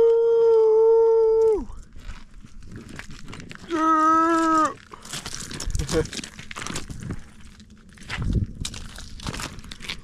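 Two long held yells, the first steady and high for about two seconds, the second shorter and lower a couple of seconds later. Scattered crunching and crackling follow.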